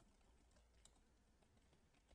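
Near silence, with a few faint computer-keyboard keystrokes.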